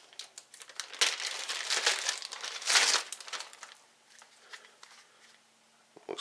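Clear plastic bag crinkling and rustling as a magazine is pulled out of its packaging, busiest in the first three seconds with the loudest crackle just before the three-second mark, then dying away.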